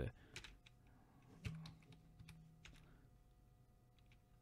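Faint, scattered clicks of a computer keyboard and mouse, a few irregularly spaced presses, the loudest about a second and a half in.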